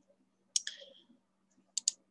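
Computer mouse clicking to advance a presentation slide. There is a sharp click with a brief hiss after it about half a second in, then a quick double click near the end.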